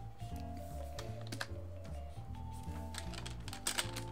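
Scattered computer keyboard key clicks, a few at a time, over background music with a stepping bass line.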